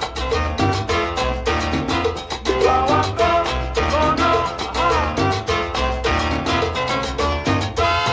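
Salsa recording in an instrumental stretch with no singing: percussion and bass keep a steady, dense beat under gliding melodic lines.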